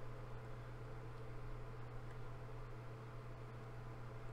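Quiet room tone: a steady low electrical hum under faint hiss, with no distinct events.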